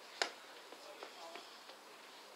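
A single sharp crack, the loudest sound here, about a fifth of a second in, followed by a few faint knocks and a distant voice.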